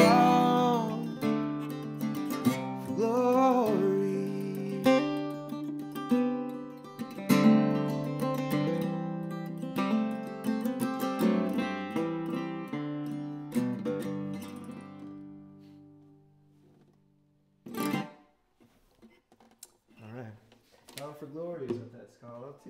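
Steel-string acoustic guitar strummed through the end of a folk song, with a man's voice holding the last sung notes in the first few seconds. The chords ring out and fade away over the following seconds. After a pause comes a single knock, then a few short voice sounds near the end.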